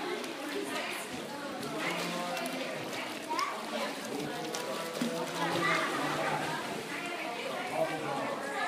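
Background chatter of several voices, children's among them, with no one voice standing out.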